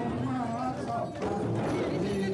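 A group of voices singing a chant together to a steady, hollow-knocking beat on a chyabrung, the Limbu barrel drum played for circle dancing.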